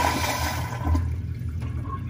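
Tankless commercial toilet flushing through a push-button flush valve. The loud rush of water dies down about a second in, leaving a quieter, lower flow as the bowl refills.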